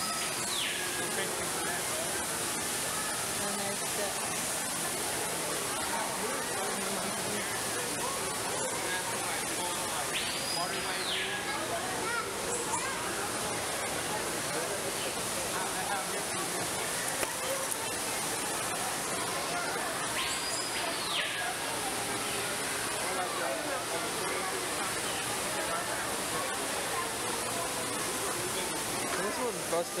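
Steady rush of an indoor waterfall pouring into a pool, under a murmur of visitors' voices. A high whistled call that rises, holds briefly and falls comes through about every ten seconds.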